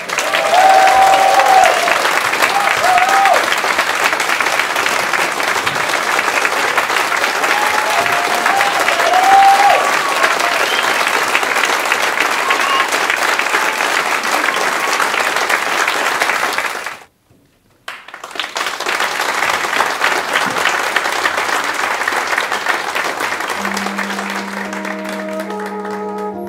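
Concert audience applauding a brass band, with a few cheers in the first ten seconds; the sound cuts out for about a second two-thirds of the way through. Near the end the applause fades as the brass band starts its next piece on long held chords.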